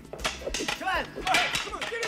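Men yelling and egging on a fistfight, with a few sharp hits of blows landing among the shouts.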